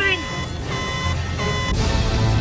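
Electronic alert tone from a starship bridge console, held for about a second while shields are failing, then a sudden loud rush of noise begins near the end.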